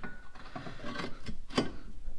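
Steel control arm drop bracket being handled and offered up to the Jeep's frame: light clinks and scrapes of metal, with a few short knocks, the sharpest about one and a half seconds in.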